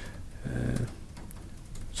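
A pause in a man's speech: faint room tone with one short, low hesitation sound from his voice about half a second in.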